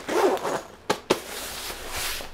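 Zipper on a black fabric bag being pulled, a short rasp of the teeth, followed by two sharp clicks a little past the middle.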